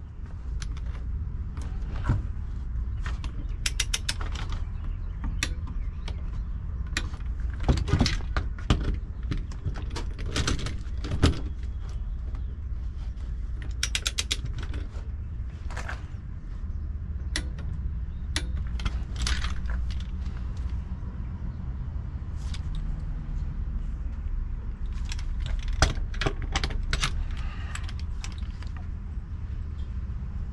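Harbor Freight torque wrench's ratchet head clicking in short quick runs and single clicks as it tightens main breaker lug screws, over a steady low rumble.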